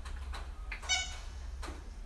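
A single short high-pitched squeak about a second in, among faint taps and clicks, from a dog rolling on its back and playing with a ball.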